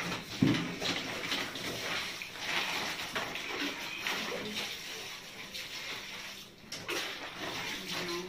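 Laundry being washed by hand in plastic basins: water sloshing and splashing with rubbing and handling of wet cloth. There is a loud clunk about half a second in.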